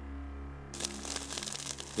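Dry grass fire crackling, starting suddenly a little under a second in, over a steady music drone.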